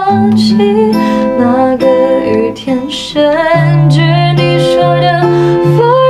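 A woman singing a Mandarin pop song, accompanied by an acoustic guitar.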